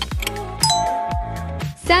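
A two-note ding-dong chime sounds about half a second in and rings for about a second, over background music with a steady beat. It is a quiz sound effect marking the countdown's end and the answer reveal.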